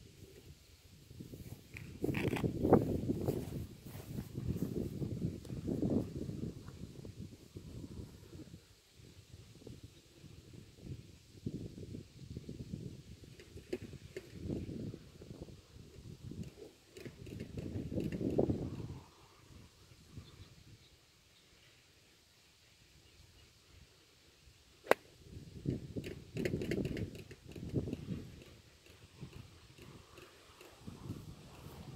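Wind gusting over the microphone in low, rumbling swells, with one sharp click about 25 seconds in: a golf club striking the ball off the tee.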